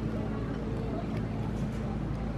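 Steady low machine hum, with faint voices talking in the background.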